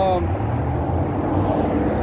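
Distant engine noise: a steady low rumble with a faint, even hum above it.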